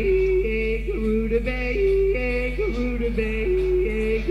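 Live rock band music from a 1970 concert recording: a sung or played melodic line jumps back and forth between a low and a high note over a steady low hum.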